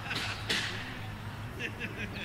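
Chatter from people nearby over a steady low hum, with one sharp smack about half a second in.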